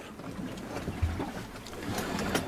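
Background noise inside the cabin of a small sailing yacht under way, with a few faint knocks and a low thump about a second in.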